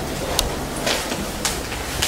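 Steady background noise with a few faint, short clicks between lines of dialogue.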